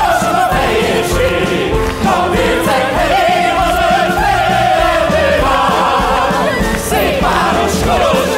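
Operetta ensemble of male and female soloists singing together in chorus, accompanied by an orchestra.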